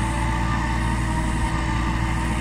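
Massey Ferguson tractor engine running steadily at high throttle while driving a forage harvester through giant sorghum: a constant drone with a low hum. The tractor strains a little in the heavy crop, so it is run slow and at high revs.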